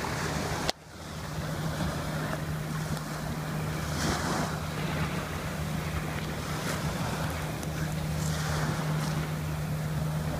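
Wind on the microphone and small waves on the beach, over a steady low hum. The sound drops out briefly just under a second in.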